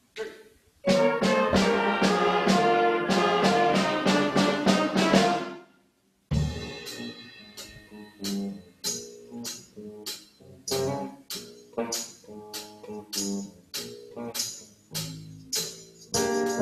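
School jazz band of saxophones, trumpets, drum kit and keyboard playing an up-tempo tune. After a few faint clicks it comes in loud about a second in, stops dead for a moment near the middle, then carries on with short punchy hits over the drums and cymbals.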